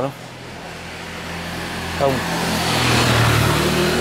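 A motor vehicle driving past: a steady engine hum with road noise that grows louder, loudest about three seconds in.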